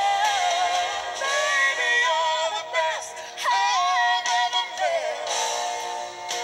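A song playing, a sung vocal line wavering with vibrato over sustained accompaniment. It is played back from a VHS tape through a TV soundbar and sounds thin, with little bass.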